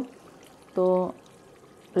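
Faint wet sounds of a metal spatula stirring thick mutton curry in a metal pot, with a woman saying one short word about a second in.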